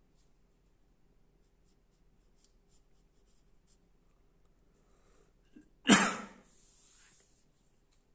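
Pencil drawing lightly on paper in faint short scratchy strokes. About six seconds in comes a loud sudden burst of noise that fades within about half a second.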